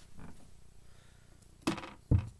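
A filled plastic bucket being handled by its handle and rope: faint rustling, then one sharp plastic knock near the end.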